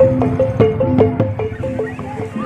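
Javanese gamelan-style music: a quick repeating melody of struck metal tones over a low held tone, with sharp beats a few times a second.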